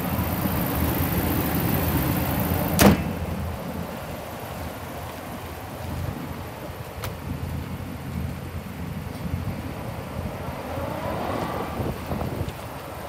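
A pickup truck's hood slammed shut once, a single loud bang about three seconds in, over a steady low rumble and wind on the microphone. A faint click follows a few seconds later.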